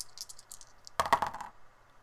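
A single die rattled in a hand, a quick run of small clicks, then thrown about a second in, clattering and tumbling across a cardboard game board. The clatter is the loudest sound.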